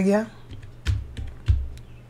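Computer keyboard keys typed one at a time as digits are entered. There are a few separate keystrokes, each with a dull thud, the two loudest about a second and a second and a half in.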